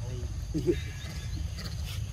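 Two short, low vocal sounds, the second and louder about half a second in, over a steady low rumble, with a few faint high clicks near the end.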